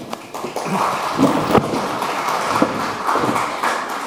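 Audience applauding in a hall, the clapping swelling in about half a second in and carrying on steadily.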